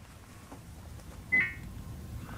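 Dead air on a dropped remote broadcast line: faint low hum and hiss, with one short electronic beep about one and a half seconds in.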